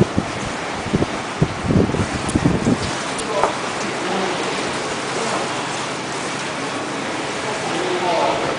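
Wind buffeting the microphone in low rumbling gusts for the first three seconds, then a steady rushing hiss.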